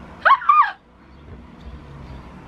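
A short, high-pitched gliding vocal sound lasting about half a second, near the start, followed by quiet room tone.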